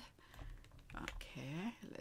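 Faint computer keyboard typing and clicks, with a brief faint voice about a second and a half in.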